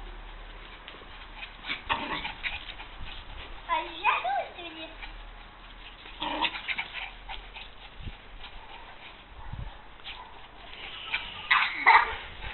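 Small dogs playing chase, giving short, scattered vocal sounds, mixed with a person's voice now and then. The calls grow louder near the end.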